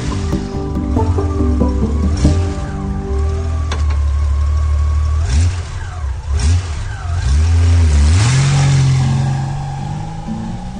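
A vehicle engine running at a steady low idle, blipped up in revs several times in the second half, then held at higher revs near the end, over music.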